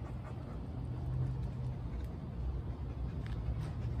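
A puppy panting in the heat, faintly, over a steady low rumble on the phone's microphone.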